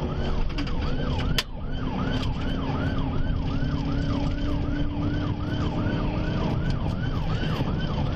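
Police car siren in a fast yelp, rising and falling about two and a half times a second over the patrol car's engine and road noise during a high-speed pursuit. A sharp click breaks it briefly about a second and a half in.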